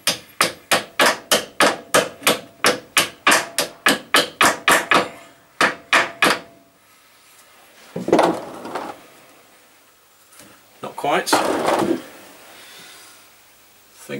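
A hammer tapping the motor's pivot pin home into the head of a Meddings pillar drill: a fast, even run of light blows, about four a second, for some six seconds, then it stops. Two short bursts of scuffling noise follow later.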